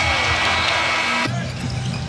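Basketball arena's end-of-quarter horn sounding as a steady, buzzing multi-tone blast. It cuts off abruptly after about a second and a quarter and gives way to arena crowd noise.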